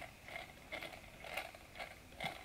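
Faint light clicks, about two a second, from the crank and connecting-rod linkage of a small Fleischmann toy steam engine as its flywheel is turned slowly by hand.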